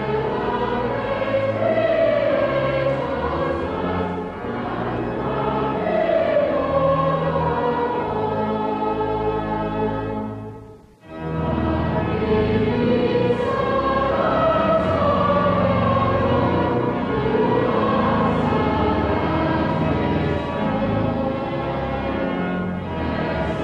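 Massed choir of cathedral choristers singing a slow sacred piece, the voices holding long notes. The singing breaks off briefly about halfway through and then starts again.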